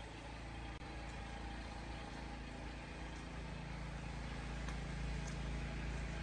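A steady, low mechanical hum, even in pitch, with a faint hiss above it.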